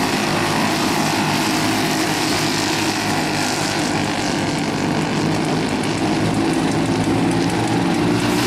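Several Briggs & Stratton flathead single-cylinder kart engines running at racing speed around a dirt oval, making a steady, overlapping drone.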